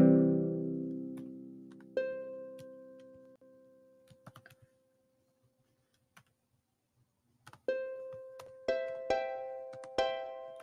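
Notation software playing back a harp sound as each note is typed into a chord. A chord is dying away at the start and a single higher note sounds about two seconds in and fades. After a quiet gap, three more plucked notes come in quick succession near the end.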